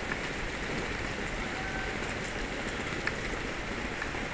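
Steady hiss of city street ambience, with distant traffic and a couple of faint ticks.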